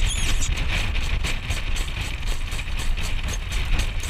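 Wind rumbling heavily on the microphone of a jog cart moving at speed behind a harness horse, with the horse's hoofbeats and the cart's rattle as a quick, even beat. A brief high squeak sounds right at the start.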